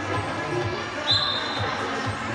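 Referee's whistle, one blast of under a second about halfway through, signalling the restart from the centre spot, heard over background music and crowd chatter in a sports hall.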